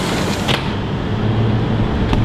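Steady city background noise heard from high up: a low rumble of traffic with a hiss above it.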